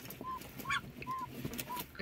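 A broody duck disturbed on her nest gives about four short, soft calls, each rising and falling in pitch.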